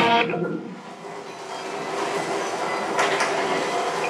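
An electric guitar's last notes ring out and die away, then audience applause builds after about a second and carries on steadily.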